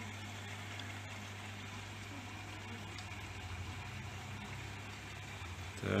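Steady low mains-rate hum with a faint hiss from running aquarium equipment: air pumps and filters driving the tanks' sponge filters.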